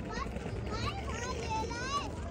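Children's high-pitched voices calling and squealing, over a low rumble of wind on the microphone.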